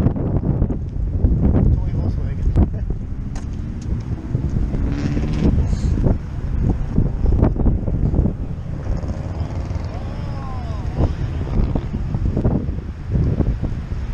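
Wind buffeting the microphone with a steady low rumble, with people talking faintly in the background.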